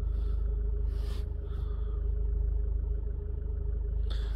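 Steady low rumble of a diesel car engine idling, heard from inside the cabin, with a steady hum over it and a few faint taps in the first second or so.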